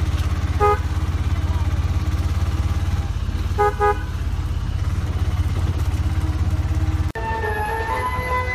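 A motor vehicle's engine running with a fast, even pulsing rumble, heard from inside the vehicle while it drives. A horn gives one short honk about a second in and two quick honks a few seconds later. Near the end the sound cuts to music with a flute-like melody.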